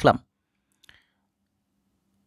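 A man's word trails off, then a single faint click about a second in, followed by near silence with a faint low hum.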